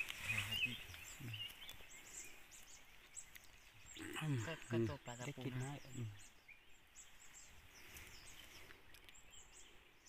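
A person speaking briefly twice, near the start and again about four seconds in, over faint, irregular high-pitched chirps of small birds.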